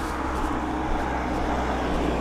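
Minibus approaching along the road: steady engine hum and tyre noise, growing slowly louder as it comes closer.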